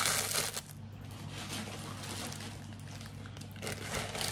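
Plastic packaging crinkling for about half a second, then faint rustling as items are handled, over a steady low hum.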